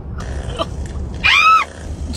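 A person's short, high-pitched squeal that rises and falls, about halfway through, over the low rumble of a car's cabin on the road; a breathy noise comes before it.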